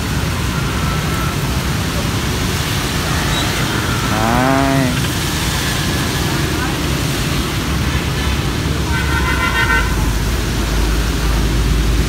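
Steady hiss of rain with road traffic behind it. A brief rising-and-falling call from a voice comes about four seconds in, and a vehicle horn sounds for about a second near the ten-second mark as a low engine rumble builds.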